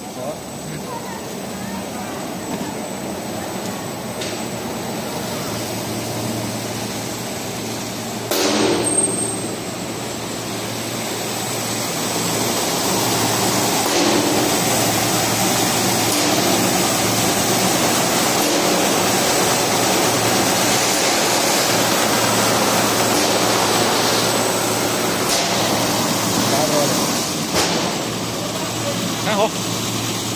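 Automatic wide-panel sanding machine running, its motors, spinning sanding heads and brush rollers and dust extraction making a loud, steady whir with a low hum. There is a brief clatter about eight seconds in, and the noise grows louder from about twelve seconds in.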